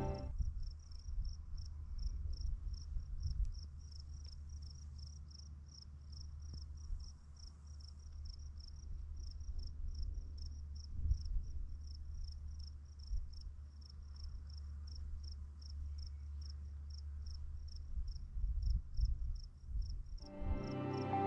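A cricket chirping steadily at about three chirps a second, with wind rumbling unevenly on the microphone underneath.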